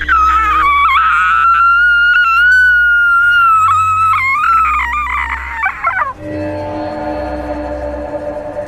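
A woman said to be possessed lets out one long, high-pitched shriek that wavers and holds for about six seconds, then falls away. Low horror background music drones underneath.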